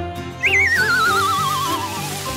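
Cartoon sound effect: a whistle-like tone that wobbles as it slides down in pitch, starting about half a second in and falling for about a second and a half, over background music.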